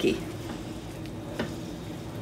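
A spoon stirring sticky, marshmallow-coated rice cereal in a bowl, a soft steady scraping with one light knock partway through.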